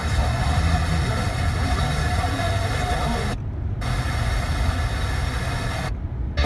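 Car FM radio tuned to a weak station: mostly static and hiss with faint program audio underneath, over a low rumble. The audio cuts out completely for about half a second a little past the middle as the radio steps to the next frequency.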